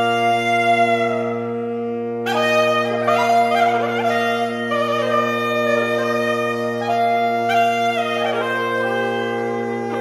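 Saxophone quartet of soprano, alto, tenor and baritone saxophones playing: a steady low drone held throughout under upper voices that move from note to note. The upper voices thin out briefly about two seconds in, then come back in with a run of changing notes.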